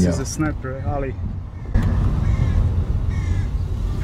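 Low, steady rumble of a car's engine and tyres heard from inside the cabin while driving, growing a little louder about two seconds in. A man's speech ends in the first second, and two faint short high sounds come later.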